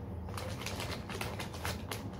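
Snack packet wrappers crinkling and rustling in hands, a quick run of sharp crackles.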